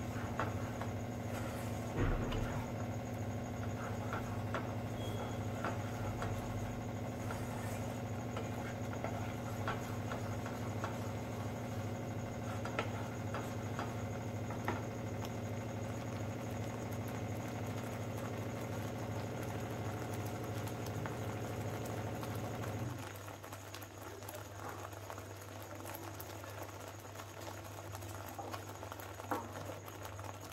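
Thick curry gravy simmering in a pot, with scattered small pops and clicks from the bubbling sauce and a spoon at the start. Under it runs a steady mechanical hum that cuts off about three quarters of the way through.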